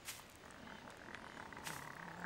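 Soft rustling with a few light clicks: sound effects for a small creature moving through grass.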